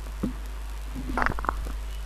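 A pause in the speech: a steady low electrical hum from the sound system, with a few faint ticks and a brief faint sound a little over a second in.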